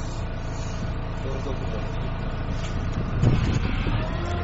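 The dual mode rail-road vehicle's engine idles steadily, heard from inside the cabin. About three seconds in there is a louder low thud as the body lowers onto its road tyres during the switch from rail to road mode.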